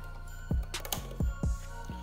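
A few sharp plastic clicks and knocks as a round diagnostic connector is twisted off its socket, over quiet background music.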